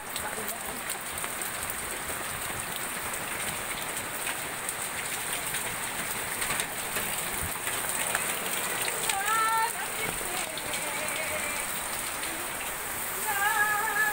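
Steady rain pouring down, a constant hiss of water falling on the ground and surfaces around. Short bursts of voices come through about nine seconds in and again near the end.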